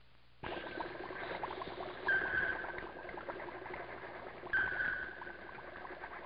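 Bubbling and fizzing of liquid in laboratory glassware, starting about half a second in, with two short steady high tones about two and a half seconds apart.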